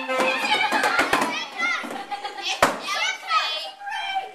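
A group of children talking and calling out over one another, with a sharp knock about two-thirds of the way through.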